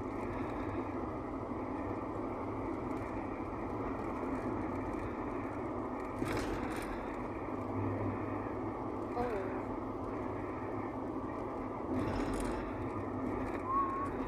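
Steady road and engine noise inside a car's cabin driving at a constant speed, with a few brief louder sounds about six, nine and twelve seconds in.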